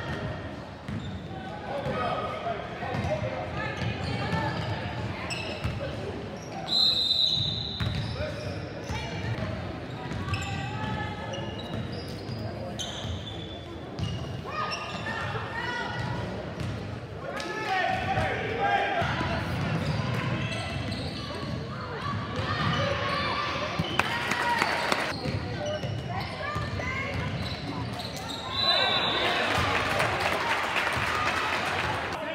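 Basketball game in a reverberant gym: a ball dribbling on the hardwood, players and spectators calling out, and a referee's whistle blowing briefly twice, about seven seconds in and near the end.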